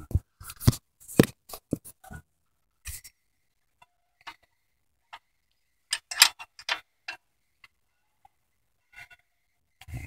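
A metal wrench clicking and knocking against the belt tensioner and surrounding engine parts in short, irregular clusters of sharp clicks, the loudest group about six seconds in.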